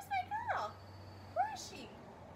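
Bernedoodle puppy giving short high-pitched whines that rise and fall: two or three in the first half second and one more about one and a half seconds in.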